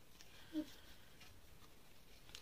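Quiet room with faint rustling of items being handled, and one brief soft vocal sound about half a second in.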